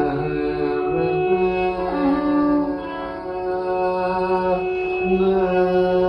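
Carnatic vocal music in raga Sankarabharanam: a male voice holds long notes and glides between them, with short breaks about a second in and near five seconds.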